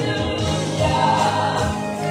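Live gospel worship music: singers on microphones over held keyboard chords, the voices blending like a choir.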